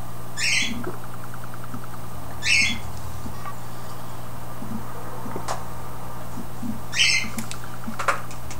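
A person sipping cola from a glass: three short sips, two close together early and one about seven seconds in.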